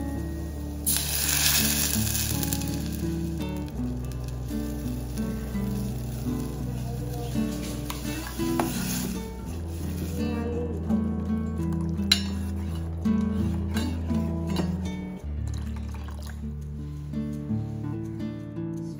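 Background music with steady low notes throughout. For the first half, coconut-and-chilli curry paste sizzles as it goes onto the sautéed onion in a steel pot. In the second half, a steel spoon clicks and scrapes against the pot as the paste is stirred.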